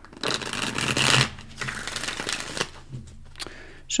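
A deck of tarot cards being shuffled by hand, in two rustling spells of about a second each, followed by a brief tap of the cards.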